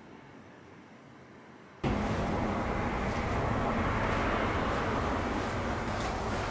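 Faint room tone, then about two seconds in a sudden jump to a loud, steady noise, heaviest in the low end, that runs on without change.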